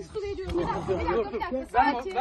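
Several people talking over one another in a jumble of voices.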